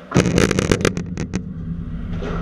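Loud rattling and knocking right at the camera microphone: a sudden rush of noise followed by a quick string of about ten sharp clicks over about a second, thinning out, then a low rumble.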